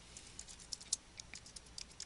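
Faint typing on a computer keyboard: about a dozen light key clicks in an irregular run.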